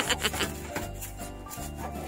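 Long-handled car-wash brush scrubbing soapy car paintwork, its bristles rubbing across the wet panel, over background music with a low bass line.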